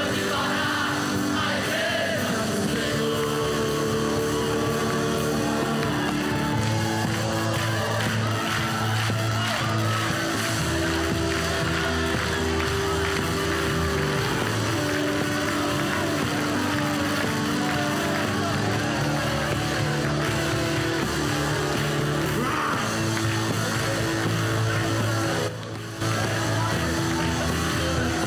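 Live gospel worship music from a band with drum kit and electric guitar, with voices over it. The sound dips briefly just before the end.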